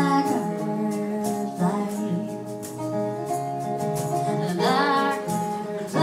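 Live acoustic guitar and female vocal: a steel-string acoustic guitar plays steady held notes while a woman's voice sings a phrase that trails off at the start and a new one about two-thirds of the way through.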